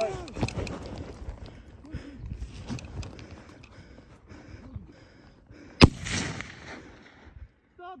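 Low rustling of movement, then a single sharp shot about six seconds in, which rings out briefly.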